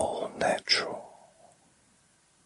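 A man's soft whispered speech: a few words, trailing off about a second and a half in, then near silence.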